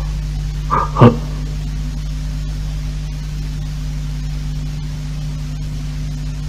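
A steady low hum from the anime clip's soundtrack, with one short voice-like utterance about a second in.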